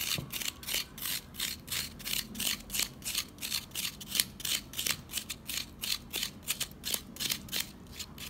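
A metal spoon scraping the cut face of a raw half apple, grating the flesh into pulp. The strokes come in a steady rhythm of about four a second.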